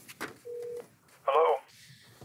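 A short, steady telephone tone heard through the handset, cut off as the call is answered, followed by a voice saying 'Hello' over the phone line with a thin, narrow telephone sound.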